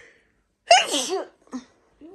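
A person sneezing once: a sudden loud burst a little under a second in, with a short voiced tail.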